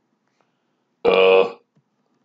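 A man's short, wordless vocal sound, about half a second long, about a second in.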